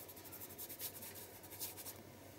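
Faint, scratchy rubbing of a craft sponge and fingertips working wet paint over the paper of a journal page, in a quick run of light strokes.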